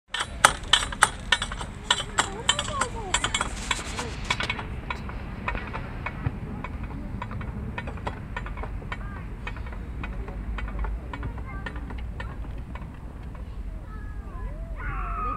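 A young child babbling in a high voice over a run of sharp clicks, which come quick and loud for the first four seconds or so and then fainter and sparser.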